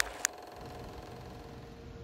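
Two quick clicks about a quarter of a second apart, then a steady low mechanical hum with a faint held tone underneath.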